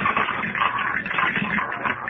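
A roulette wheel sound effect spinning for a bet, with casino crowd murmur behind it, on a narrow-band old-time radio recording.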